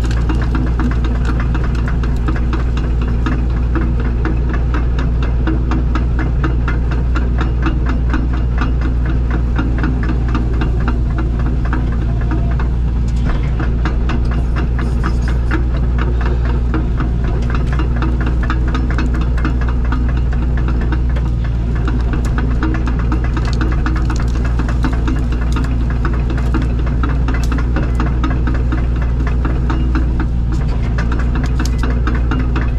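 Excavator's diesel engine running steadily, heard from inside the cab, with a fast, even rattle over its drone.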